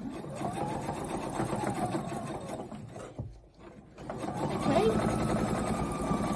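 Husqvarna Viking electric sewing machine stitching through thick layers of polar fleece. It stops briefly about three seconds in, then runs again, back and forth, to lock the end of the seam.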